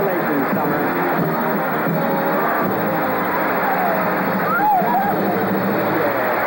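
Band music with held notes over crowd noise and excited, wavering voices, one cry standing out near the end.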